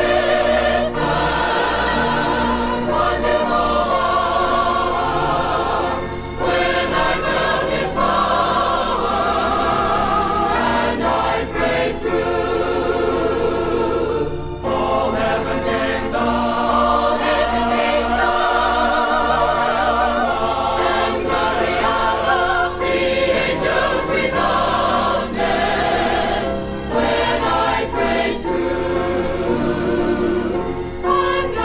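Music: a 40-voice choir singing a gospel song, with two brief pauses between phrases.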